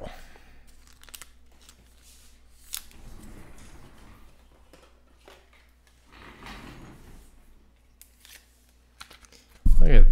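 Quiet handling of a trading card and a clear plastic card holder: two soft rustling stretches and one sharp click about three seconds in.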